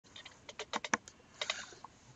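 A quick run of clicking keystrokes on a computer keyboard, most packed together in the first second, with a couple more about a second and a half in.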